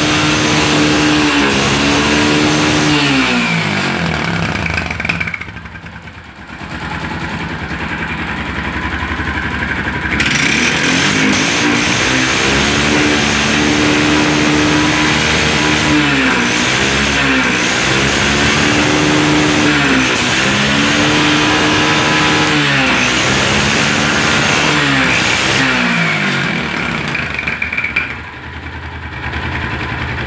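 Single-cylinder SkyGo 250–300 cc engine of a Lifan ATV running and being revved, its pitch rising, holding high and falling back several times. Twice the revs sag right down before the engine picks up again. The owner says this engine runs well but quickly soots its spark plug and overheats its exhaust.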